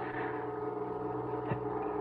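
A steady drone of several held tones, low to middle in pitch, with a faint click about one and a half seconds in.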